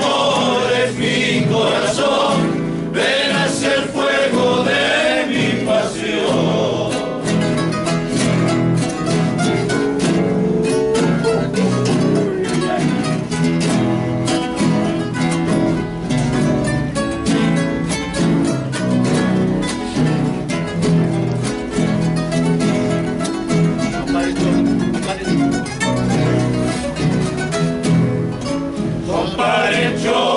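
A large group of acoustic guitars strummed together in a Cuyo tonada. Men sing in unison for the first few seconds. Then the guitars play a long instrumental interlude, and the singing comes back right at the end.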